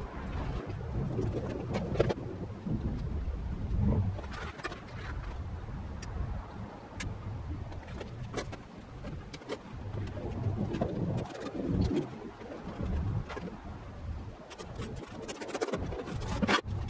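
Birds cooing in the background, with scattered light clicks and knocks as a racing bucket seat is tipped over and handled.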